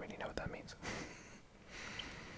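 Soft whispered breaths and mouth sounds close to the microphone, with a few faint clicks.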